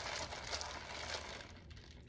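Plastic straw stirring ice in an iced chai latte in a plastic cup with a lid: a soft, uneven rattling and crinkling of ice and straw that dies away in the last half second.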